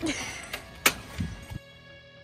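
A long torque wrench on a lorry's front wheel nuts during a re-torque: one sharp metallic click a little under a second in, with fainter knocks either side. Soft music comes in near the end.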